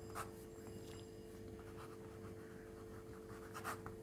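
Faint scratching of a metal pen nib on paper as a few short words are written and underlined, with the strongest stroke near the end.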